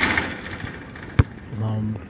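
A basketball shot hitting the hoop: the ball strikes the rim and backboard with a rattling crash, then bounces once, sharply, on the court about a second later. A brief low steady hum follows near the end.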